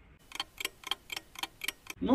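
Clock ticking steadily, about four ticks a second, seven ticks in all.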